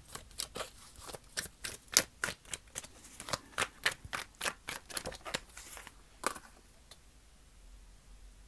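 A Dreams of Gaia tarot deck being shuffled by hand: a quick run of sharp card clicks, several a second, that stops about six seconds in.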